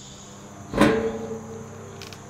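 Steady chirring of insects, crickets or similar, in the background. About three-quarters of a second in there is a single sharp hit with a short ringing tail that fades within about half a second.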